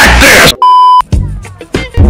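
Loud, distorted edited meme audio cuts off about half a second in, followed by a steady, high electronic beep tone, like a censor bleep, lasting about half a second. After it come faint scattered clicks.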